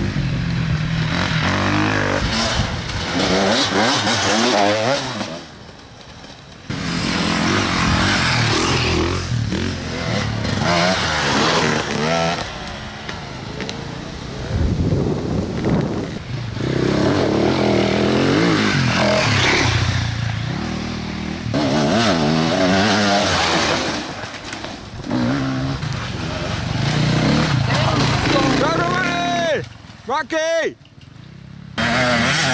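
Off-road motorcycle engines revving, rising and falling in pitch over and over as the throttle is worked, with a brief quieter dip about six seconds in.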